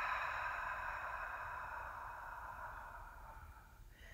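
One long cleansing exhale through the mouth, a breathy rush that slowly fades away to almost nothing.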